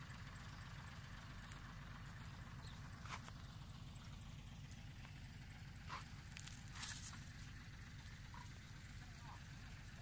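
Faint, steady low rumble of a heavy diesel engine running, from the cane truck or loader, with a few brief faint sounds about three, six and seven seconds in.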